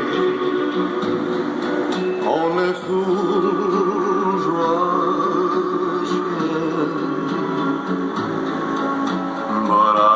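Music: a song with guitar and singing.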